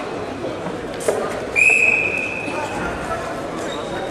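A single whistle blast about a second and a half in: one high, steady tone, loudest at its start, that fades out over about a second. It comes over a constant murmur of voices in a large hall, with a short sharp thump just before it.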